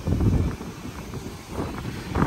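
Wind buffeting the microphone on an open ship deck: a low, gusty rumble with no clear tone.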